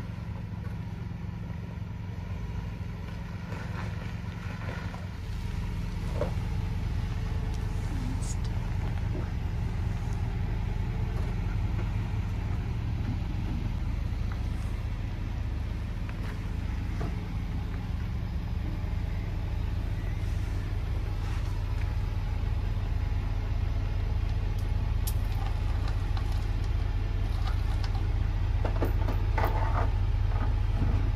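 Diesel V8 of a GMC Sierra 3500 pickup idling low and steady as the truck eases back toward a fifth-wheel pin box, getting louder about six seconds in and again near the end as it comes closer.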